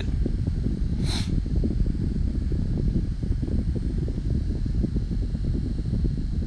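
Steady low rumble of background noise, with one short hiss about a second in.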